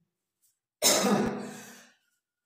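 A woman clearing her throat once, starting suddenly about a second in and fading away.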